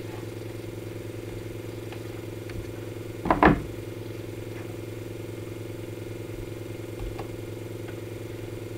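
Steady low electrical hum with a buzzy stack of tones, picked up by the recording microphone. A short, louder noise breaks in about three seconds in, and a few faint clicks are scattered through it.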